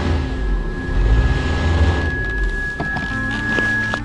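Background music over the low rumble of a Subaru Outback's engine being given gas while the electronic parking brake holds the car. The rumble swells twice and then dies away near the end.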